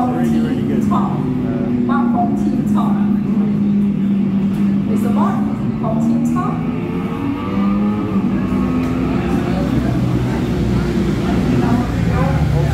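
Ducati V4S superbike's V4 engine on track, played back from onboard lap footage through a TV speaker. The engine note rises and falls in steps as the rider works the throttle and gears.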